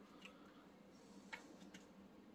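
Near silence: faint room tone with a few small clicks, the clearest about one and a half seconds in.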